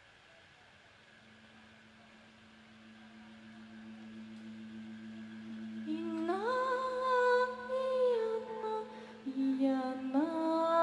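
A low sustained note swells slowly up from near silence. About six seconds in, a woman's voice enters, sliding up into long held, wordless notes, and a second sung phrase starts near the end.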